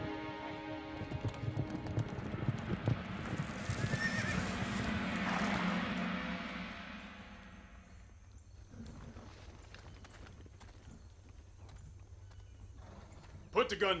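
Horses' hoofbeats coming on, with a horse whinnying about four seconds in, under a film score; the hoofbeats die away after about seven seconds to a few scattered steps, and a man shouts near the end.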